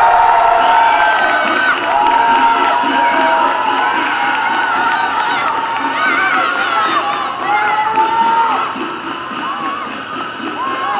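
Football crowd cheering and shouting loudly for a goal just scored, many voices at once, easing off slightly near the end.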